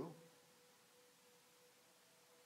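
Near silence with a faint, steady high hum.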